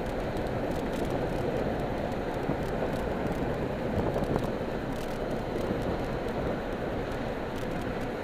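Steady road and engine noise heard from inside a moving car's cabin, an even rumble with no sharp changes.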